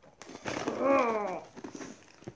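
A woman's drawn-out, wordless 'ooh', rising then falling in pitch, with faint ticks and rustles of a cardboard box being handled.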